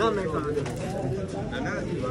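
Several men's voices talking over one another in a room, no single speaker standing out.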